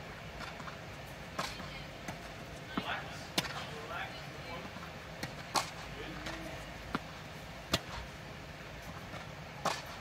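Tennis rally on an indoor hard court: a series of sharp pops as the ball is struck by the rackets and bounces on the court, the louder strokes coming about every two seconds with fainter ones between.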